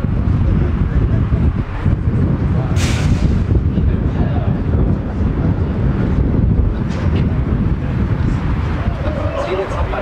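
Wind buffeting the camera microphone with a steady low rumble, under faint distant voices of players and spectators and a brief sharp sound about three seconds in.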